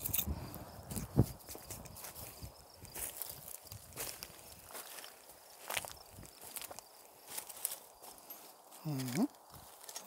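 Footsteps crunching over scattered rubbish and debris, an irregular series of short crunches and clicks.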